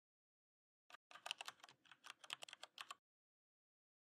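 Typing on a computer keyboard: a quick run of key clicks about two seconds long, starting about a second in.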